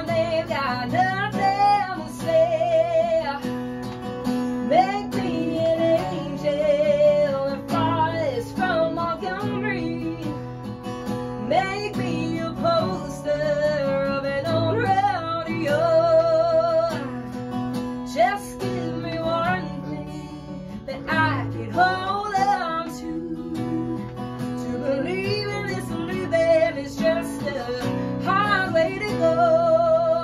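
A young woman singing with a strong vibrato over her own strummed Hagstrom acoustic guitar, performed live with no pitch correction.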